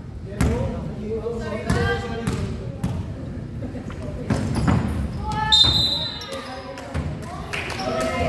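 A basketball bouncing and knocking on a hardwood court, with players' voices calling out and a short high squeak a little past halfway, all echoing in a large gym hall.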